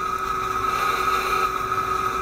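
Simulated welding-arc sound of a Lincoln VRTEX 360 virtual welding trainer during a flux-cored weld: a steady hiss with a constant high tone.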